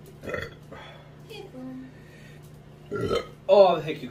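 A man's loud burp near the end, preceded by a few small mouth and breath sounds.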